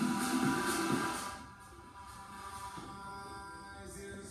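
Background music for a workout, growing quieter about a second and a half in and continuing at a lower level.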